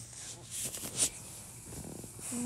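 Handling noise: rustling and brushing of plush fabric and packaging against a phone's microphone, with a sharp click about a second in.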